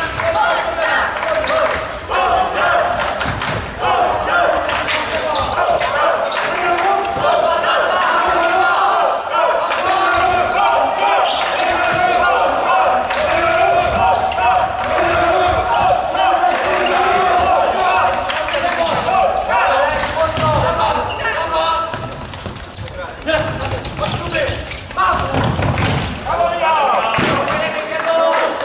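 Futsal ball being kicked and bouncing on a wooden sports-hall floor, sharp knocks echoing in the hall, under continual shouting and calling voices.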